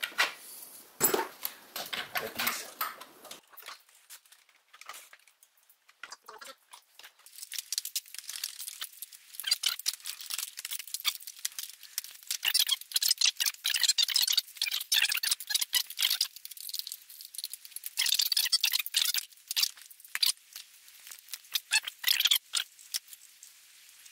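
Ratchet wrench clicking in quick runs as bolts are run in on the intake manifold bracket, with small metal tool rattles. There are two long runs of clicking, the second after a short pause.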